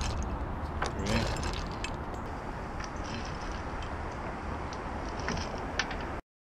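Scattered small clicks and rustles of dry ice pellets being handled and dropped one by one into a rubber balloon, over a steady low rumble.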